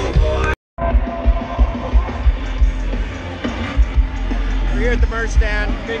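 Live festival music from a loudspeaker sound system with a steady thudding bass beat. It cuts out abruptly for a moment about half a second in, and voices start talking near the end.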